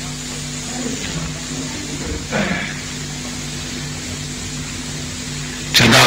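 Steady low hum and hiss in the recording during a pause in a man's speech, with a brief faint voice sound about two and a half seconds in.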